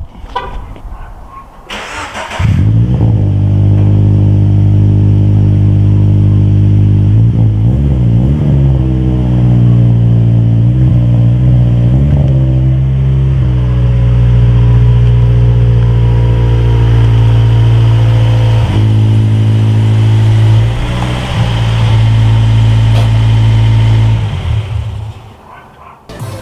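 Scion FR-S 2.0-litre flat-four engine started: a brief crank from the starter, catching about two seconds in, then idling loudly and steadily through the rear exhaust with slight wavers in pitch. The sound fades out near the end.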